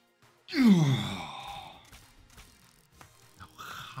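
A man's loud, drawn-out sigh of disappointment, falling steadily in pitch and fading, followed near the end by a second, softer sigh.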